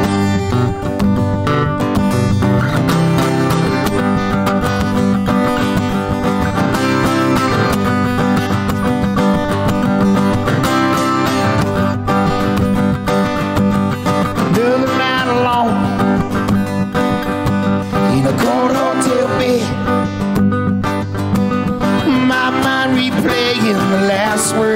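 Acoustic guitar strumming together with an electric guitar, playing the instrumental intro of a song live. From about halfway through, melody notes slide up and down in pitch over the chords.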